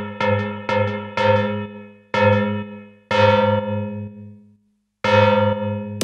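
Electronic dance music breakdown: a bell-like synthesizer plays short pitched notes, about four a second, each ringing and fading. It slows to two longer ringing notes and stops for about half a second, then the quick notes start again near the end.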